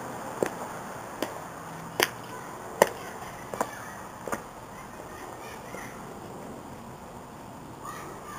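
Footsteps on a paved driveway close to the microphone: six steps a little under a second apart, growing louder toward the middle as the walker passes, then fainter as he walks away.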